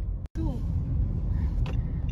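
Low, steady road and engine rumble inside a moving car's cabin. The sound cuts out for an instant just after the start, then a single short word is spoken.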